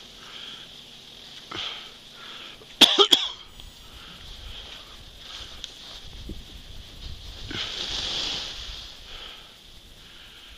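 Skis sliding and scraping over packed snow while skiing downhill, with a longer, louder scrape about seven and a half seconds in. A short, sharp, very loud burst about three seconds in stands out above it.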